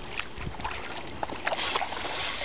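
Water splashing and sloshing with scattered small clicks as a hooked carp is played close in at the bank.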